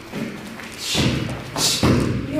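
Bare feet thudding on foam mats with the swish of a cotton uniform as a child steps and strikes through a taekwondo form: two heavier thuds, about a second in and near the end, each with a sharp swish.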